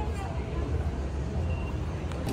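Indoor shop ambience: a steady low rumble with faint voices in the background.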